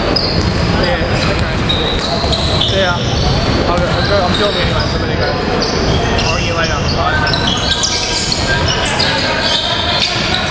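Basketball game in a gym: a ball bouncing on the hardwood court, sneakers squeaking in many short high chirps, and players' voices, all echoing in the large hall.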